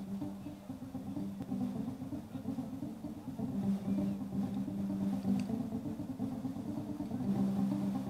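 Live band playing an instrumental song intro, led by guitar: held low notes that break off and return, with changing notes above them, starting suddenly.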